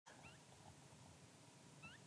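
Near silence, with two faint, short rising chirps, one near the start and one near the end.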